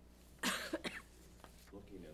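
A person coughing: a sharp cough about half a second in, the loudest, followed quickly by two shorter ones.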